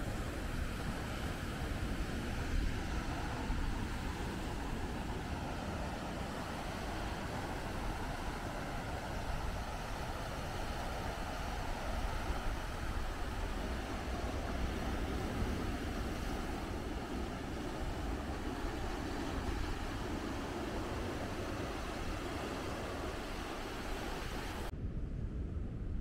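Steady noise of surf breaking on a rocky pebble beach, mixed with wind on the microphone. About 25 seconds in the sound changes to a duller wind noise with the high end gone.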